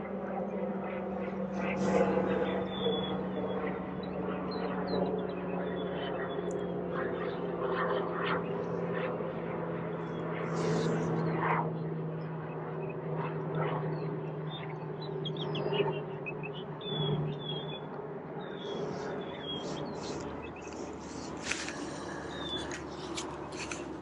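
Birds chirping over a steady low drone that slowly falls in pitch, with a few brief sharp noises.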